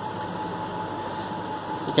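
Steady room noise: an even hiss with a faint, constant high hum underneath.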